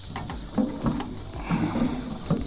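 Footsteps wading through soft mud and shallow water, the feet sinking deep with each uneven step.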